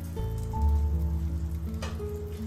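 Background music with held notes over a strong steady bass, and beneath it the faint sizzle of a butter cube starting to melt in a hot frying pan.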